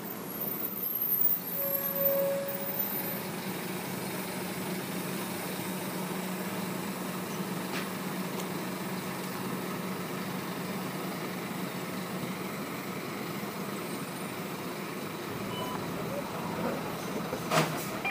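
Steady ambient background noise with a low, constant hum, with a brief tone about two seconds in and a sharp knock near the end.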